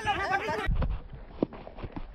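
A man's voice calls out briefly at the start. After an abrupt cut about two-thirds of a second in, there is outdoor background rumble with a few faint knocks.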